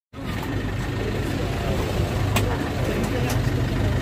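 Safari bus running along a rough track, heard from inside the cabin: a steady low engine hum and road rumble, with a few sharp rattles or clicks from the body in the second half.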